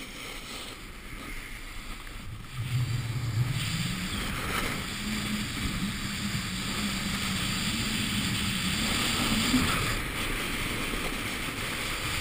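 Snowboard sliding and carving over packed snow, its base and edges scraping with a steady hiss, mixed with wind rushing over the camera microphone. It grows louder about two and a half seconds in, with a low hum that rises slightly and holds until near the end.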